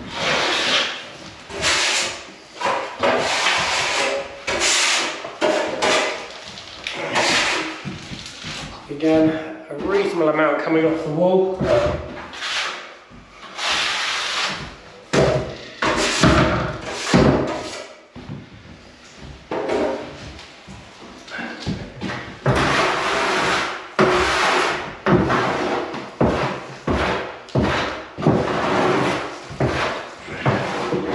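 An 800 mm plastering spatula swept again and again across freshly laid wet plaster, each stroke a separate scraping swish, as the wall is flattened.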